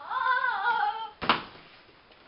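A child's high-pitched, wavering vocal cry lasting about a second, followed just after it by a single sharp thump, a child dropping onto the classroom floor.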